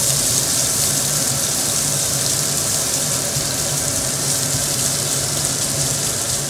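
Julienned carrots frying in hot vegetable fat in a coated pot: a steady sizzle, with the kitchen extractor hood running underneath as a low hum.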